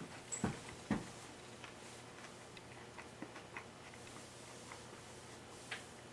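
Faint, irregular clicks and crunches of a mouthful of shrimp tempura sushi roll being chewed with the mouth closed, the fried batter crunching, with two louder clicks in the first second.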